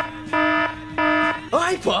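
Electronic buzzer-like alarm tone pulsing three times, each beep about a third of a second long with short gaps between. Voices chanting come in near the end.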